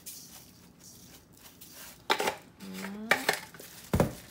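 Salt sprinkled from a plastic container onto raw chicken pieces in a stainless steel bowl, a faint hiss, followed by sharp clicks and knocks of plastic seasoning containers being handled and set down on the counter about two seconds in, around three seconds, and loudest near the end.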